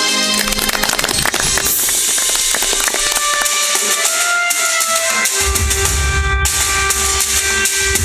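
Band music with drums: rapid snare strokes and bass drum under held pitched notes. The low drum part drops out for about two seconds in the middle, then comes back.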